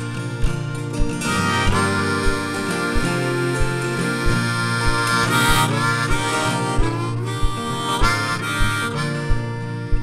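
Harmonica solo over strummed acoustic guitar, the harmonica played in a neck rack with some sliding, bent notes. A low thump marks the beat about three times every two seconds.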